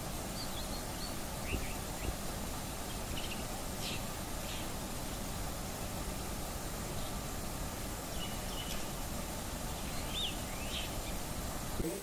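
Faint, short high-pitched bird chirps, some rising and some falling, scattered every second or so over a steady outdoor background noise.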